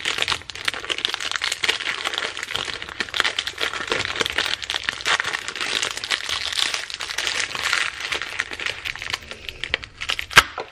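Crinkling and crackling of a plastic food wrapper with a foil lining being pulled open and peeled off by hand, a dense run of fine crackles.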